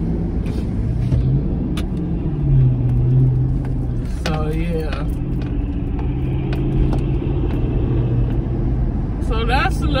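Car engine and road noise heard inside the cabin while driving: a steady low drone whose pitch drifts slightly up and down. A brief vocal sound comes about four seconds in, and speech starts just before the end.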